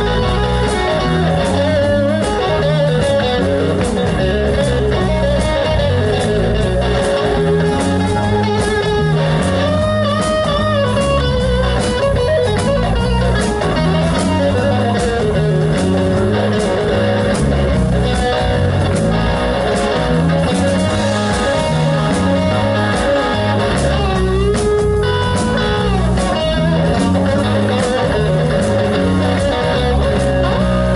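Live blues-rock band playing an instrumental passage: an electric guitar lead with bending notes over electric bass and a steady drum beat.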